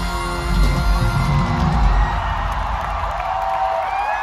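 Live pop band music with heavy bass that stops about two seconds in, followed by a large concert crowd cheering and screaming.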